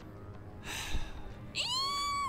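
A breathy sigh, then, about one and a half seconds in, a high-pitched squeal that rises and holds: the fan-girl squeal set off by the sigh.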